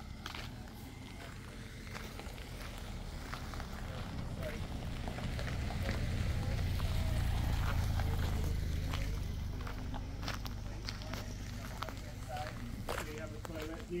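Footsteps on a gravel road, heard as a run of short crunches, over a low rumble that grows louder toward the middle and then eases off.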